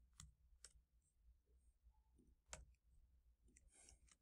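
Near silence with a few faint clicks of computer keys as code is typed, the clearest about two and a half seconds in.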